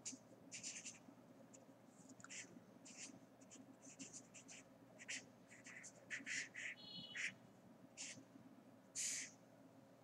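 Pen nib scratching on paper in short, faint, irregular strokes as words are written and boxed. There is a brief high squeak about seven seconds in and a longer stroke near the end.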